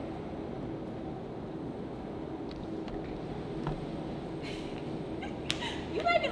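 Steady background hum of a parking garage, with a faint steady tone and a few soft, scattered clicks.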